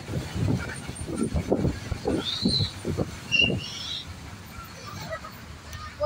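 A moving bus heard from inside, with irregular low rumbling and buffeting from the road and open window. Two brief high-pitched calls come about two and three seconds in, and the sound eases off for the last couple of seconds.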